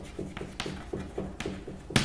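Low electrical hum with a faint pulsing about four times a second, and a few light taps.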